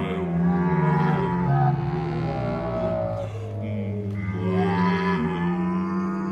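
A contemporary chamber ensemble of accordion and woodwinds playing long, slowly shifting held chords over a steady low drone. The upper tones thin out briefly midway and then swell back in.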